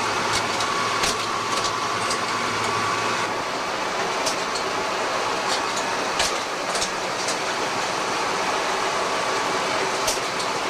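Desktop photocopier running: a steady mechanical whirr with scattered sharp clicks from its workings. A low hum drops out about three seconds in.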